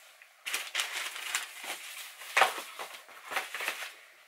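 Tissue wrapping paper crinkling and rustling in a run of short, irregular bursts as a sneaker is taken out of its box and handled, loudest a little past the middle.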